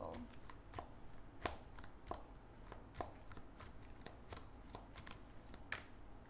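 A tarot deck being shuffled by hand: faint, irregular clicks and slaps of cards, a few a second.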